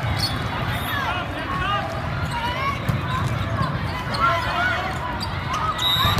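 Athletic shoes squeaking in short chirps on the sport-court floor as volleyball players move during a rally, over a steady hubbub of voices in a large hall.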